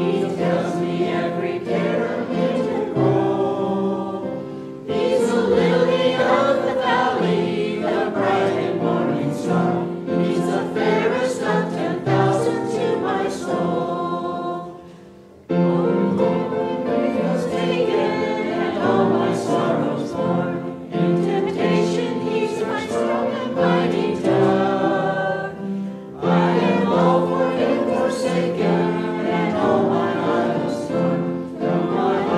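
A small mixed group of men's and women's voices singing a hymn together with musical accompaniment. The singing breaks off briefly about halfway through, then starts again with the next verse.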